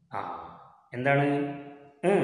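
A man's voice speaking two short phrases, the second ending in a long, drawn-out syllable.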